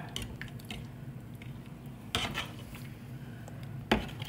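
Metal spoon stirring thick dal in a stainless steel saucepan, with soft scrapes and clinks against the pot and one louder scrape about halfway through.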